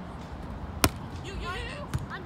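A ball bouncing twice on a hard court floor, about a second apart, the first bounce the louder, with a person's voice calling out between the bounces.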